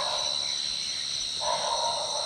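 Crickets trilling in a steady chorus. A faint hiss comes in about one and a half seconds in.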